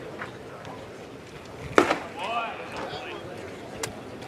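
A pitched baseball smacking into the catcher's mitt: one sharp, loud pop a little under two seconds in. A short voice call follows, and there is a faint click near the end.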